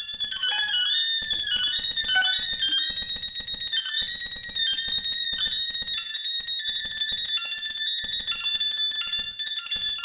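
Improvised electronic music: several high held tones that step from pitch to pitch over a fast, flickering pulse, with little bass.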